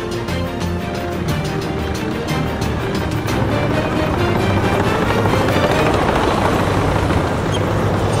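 Dramatic background music with held notes, over the engine and track noise of armoured tracked vehicles driving, which grows louder over the second half.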